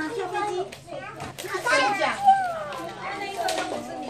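Young children's voices chattering and calling out over one another while they play, with high-pitched, gliding voices and the loudest call about two seconds in.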